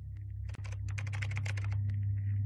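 A quick burst of computer keyboard typing, a dense run of clicks lasting about a second, over a low steady hum that grows louder.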